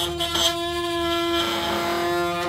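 Electric toothbrush running, a steady buzzing hum from its motor, rated at 32,000 vibrations a minute.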